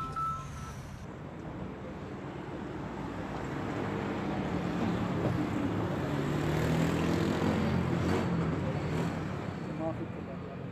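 Street traffic: a road vehicle passing, its engine and tyre noise swelling over several seconds and fading again, with indistinct voices under it.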